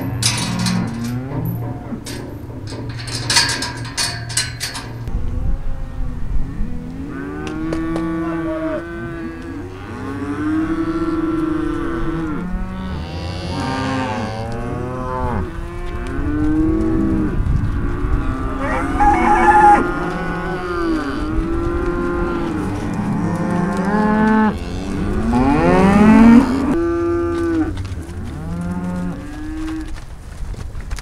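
Beef cows of a Simmental herd mooing, with many long, overlapping calls from about six seconds in. Sharp clattering knocks come in the first few seconds.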